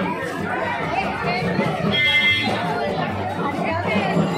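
A crowd of marchers talking at once, many overlapping voices, with music playing behind them. A short high-pitched tone sounds about halfway through.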